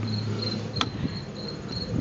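A cricket chirping steadily, about three to four high chirps a second. About a second in comes a single sharp click as the plastic lock on the intake air temperature sensor connector snaps down.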